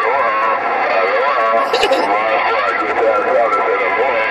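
A voice received over a President HR2510 radio's speaker: thin, narrow-band and unintelligible, riding on a steady bed of static.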